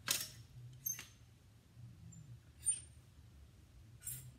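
Clothes hangers clicking and scraping on a clothing rack as a jacket is hung up and the next garment taken, with fabric rustling: three short bursts, the second and third with a brief metallic ring.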